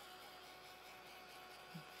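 Faint, steady hum of a craft heat tool running as it dries wet ink on card, barely above near silence.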